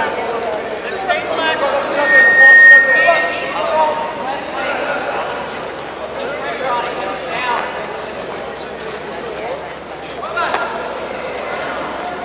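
Voices calling out in a large sports hall, typical of matside coaching during a grappling match. About two seconds in, a brief high steady tone sounds over the voices.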